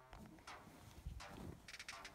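Near silence, with a few faint ticks and rustles starting about a second in.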